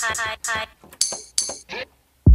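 Electronic beat sounds played from a music-production program: a quick run of short pitched notes, then two bright, clinking metallic hits about a second in and a short falling tone near the end.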